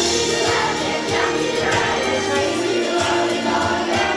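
A children's choir singing an upbeat action song together over musical accompaniment.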